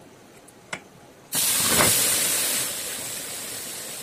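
A hot metal bikang mould is set down on a water-soaked cloth, and the wet cloth hisses sharply as the water flashes to steam. The hiss starts suddenly a little over a second in and slowly fades, after a light click. The steam is cooling the mould so the cakes can be taken out.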